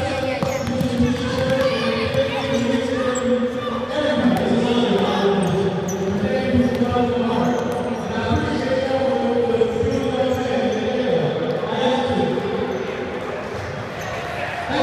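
Basketball bouncing on a hard court in a large, echoing hall, with voices in the background.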